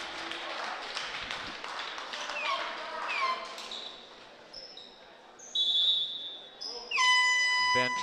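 Gymnasium crowd chatter with a few short squeaks and a ball bouncing on the floor, then, about a second before the end, a long, high whistle blast, the referee's signal for the server to serve.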